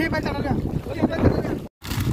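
Feet wading and splashing through shallow water, with wind buffeting the microphone and voices in the background. The sound cuts out for an instant near the end.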